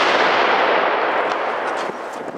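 Explosion sound effect, its blast of noise dying away slowly, thin in the bass.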